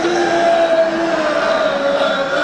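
A long, held zombie-style moan, a single drawn-out vocal tone that wavers and sinks slowly in pitch, loud as if voiced into a microphone.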